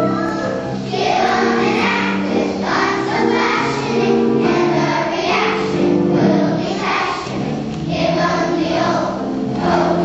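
Children's choir singing a song in unison, the group's voices running on continuously.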